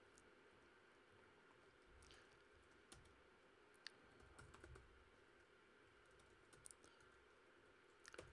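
Faint, scattered keystrokes on a computer keyboard as code is typed, a few separate clicks over near silence.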